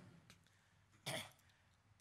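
Near silence, broken about a second in by one short throat-clear from a man at a microphone.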